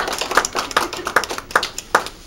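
Hand clapping: steady claps at about two and a half a second, with fainter claps in between.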